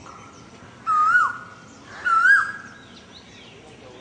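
Two loud, whistle-like animal calls about a second apart, each holding a high note and then wavering and dropping in pitch.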